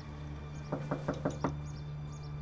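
Knocking on a front door: five quick knocks in under a second.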